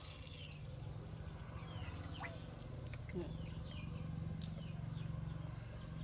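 Quiet outdoor ambience: scattered faint bird chirps over a steady low hum, with a single sharp click about four and a half seconds in.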